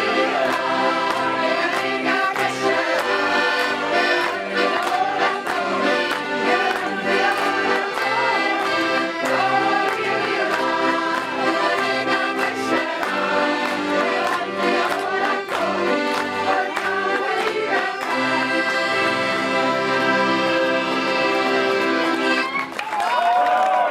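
An ensemble of piano accordions playing a tune together in chords, with the women players singing along.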